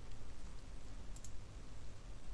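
A couple of faint computer mouse clicks over a low, steady hum from the microphone and room.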